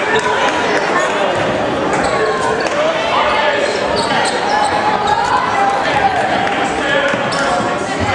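Many voices shouting and talking over one another in a large indoor hall, with a basketball bouncing and short sharp knocks throughout.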